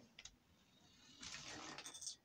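Mostly near silence: a faint click, then from about a second in a faint, brief whirring rattle of a small toy remote-control car's motor and wheels driving on a wooden floor.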